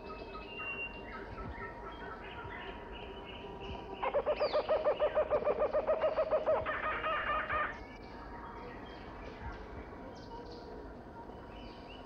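Rainforest sound-effects track of bird calls: scattered chirps and whistles, with a louder, fast-pulsing call from about four seconds in until nearly eight seconds.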